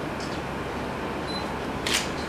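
A single sharp click near the end, over a steady, grainy noise.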